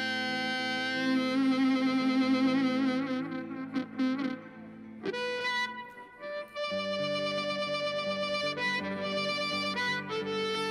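Amplified blues harmonica played into a hand-cupped microphone, giving a thick, reedy tone. It holds long notes, one wavering about a second in, and shifts to new notes around the middle, over electric guitar accompaniment.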